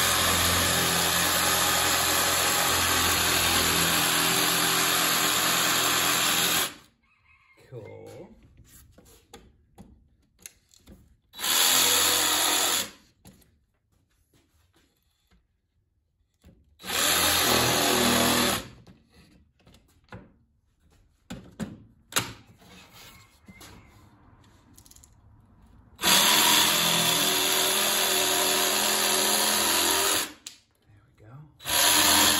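Cordless jigsaw cutting a thin wooden board, running in four separate stretches: a long cut at the start, two short bursts in the middle, and another long cut near the end. Between the cuts the saw is stopped and there are only faint handling sounds.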